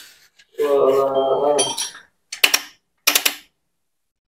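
Two sharp metal clinks about two-thirds of a second apart, from tools and parts being handled on the bare aluminium crankcase of a Suzuki Satria 120 motorcycle engine under assembly. They come after a drawn-out vocal sound of about a second.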